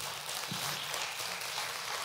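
A church congregation applauding, a steady even clapping with no voice over it.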